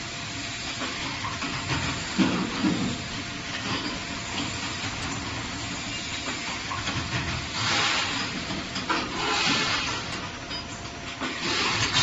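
Beetroot peeling machine running: a steady noise without a clear pitch, growing louder for a few seconds in the second half and again near the end.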